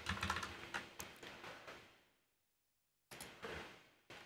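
Faint typing on a computer keyboard: a quick run of keystrokes for about two seconds, a pause, then a few more keystrokes near the end.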